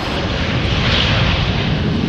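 An airliner's engines heard from inside the cabin just after landing: a loud, steady rush that swells about halfway through and then eases.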